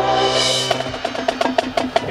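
Marching band percussion section playing a fast run of sharp, rhythmic strikes, taking over as a held chord from the band fades out in the first second.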